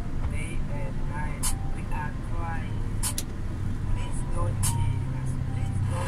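Truck engine heard from inside the cab while the truck creeps forward, a steady low drone that grows louder and firmer about four and a half seconds in. A few sharp clicks and a faint voice sound over it.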